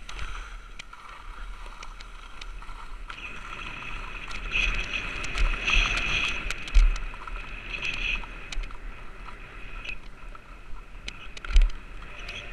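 Skis sliding and scraping over firm, chopped snow on a downhill run, with wind rumbling on a body-worn camera's microphone. The scraping grows louder through the middle, and there are scattered small clicks and two sharp knocks, one near the middle and one near the end.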